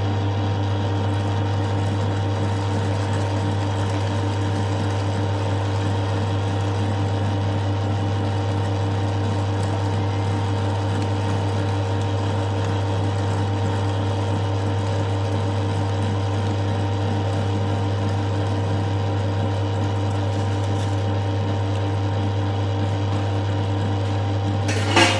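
Stainless steel electric meat grinder running steadily with a constant low motor hum while beef trimmings are fed through it and ground into mince.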